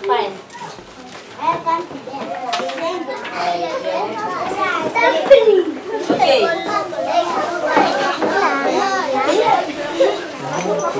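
Many young children talking at once in a classroom, a jumble of overlapping voices with no single speaker standing out. It is quieter for the first second or so, then holds at a busy level.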